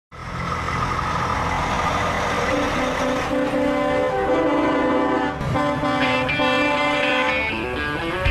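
A truck air horn sounding a run of held notes that step up and down in pitch over a low engine rumble, starting suddenly.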